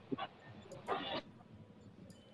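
A lull in a man's shouting: mostly quiet, with one short faint word from him about a second in.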